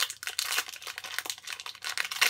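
Plastic wrapper of a trading-card pack crinkling in quick, irregular crackles as it is handled to be opened.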